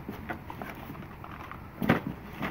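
Quiet handling of small cardboard boxes of shotgun shells, with faint light taps and rustles, then one sharp knock near the end.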